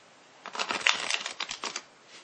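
A deck of playing cards being shuffled: a rapid run of crisp card clicks starting about half a second in and lasting about a second and a half.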